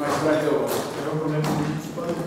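A man talking, with no other sound standing out.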